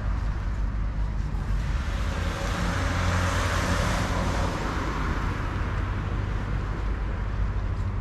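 A car passing along the road: tyre and engine noise swells to a peak about halfway through and then fades away, over a steady low rumble.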